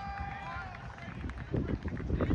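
Distant shouting voices of players and sideline spectators across a playing field: a long held call, then shorter calls, with wind rumbling on the microphone toward the end.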